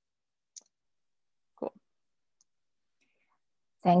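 Near silence, broken by one short, faint click about half a second in. A voice says 'cool' partway through and starts 'thank you' at the very end.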